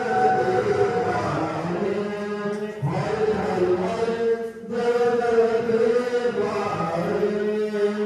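Devotional chanting: a voice holding long, steady notes, with a short break about four and a half seconds in.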